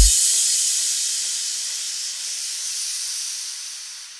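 Synthesized white-noise wash from a progressive psytrance track, left alone after the kick drum and bass cut off, slowly fading out as the track ends.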